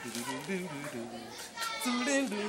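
A man's voice chanting in long, held notes.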